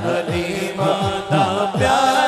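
Male voices singing an Urdu naat, a lead reciter holding a wavering melody with other singers joining in, over a rhythmic low beat.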